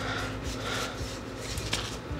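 Magic: The Gathering trading cards sliding and rubbing against each other as a hand flips through a small stack, with a faint click near the end.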